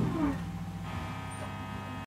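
The final chord of an electric guitar and bass guitar rings out and fades, leaving a low, steady amplifier hum.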